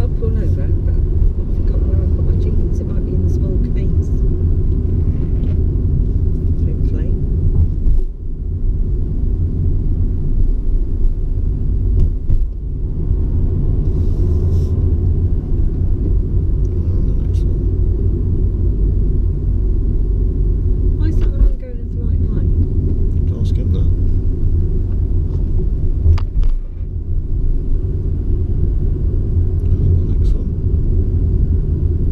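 Steady low rumble of a car's engine and tyres heard from inside the cabin while driving on the open road, dipping briefly in loudness a few times.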